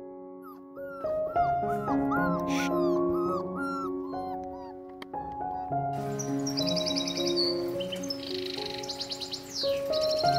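Soft background music with high puppy whimpers over it in the first few seconds, then a run of short high chirps later on.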